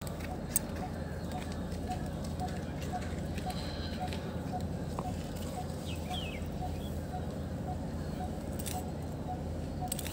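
Steady outdoor background noise with faint distant voices, and a brief bird chirp about six seconds in.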